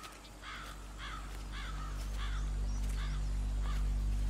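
A crow cawing repeatedly, about two caws a second, over a low steady drone that grows louder.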